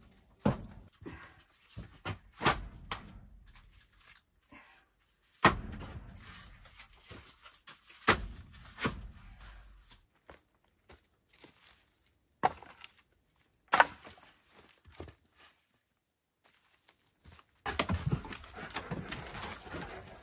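Split firewood logs clunking against each other as they are handled and stacked: about seven sharp wooden knocks, spaced a second or more apart. Dense shuffling and rustling starts near the end.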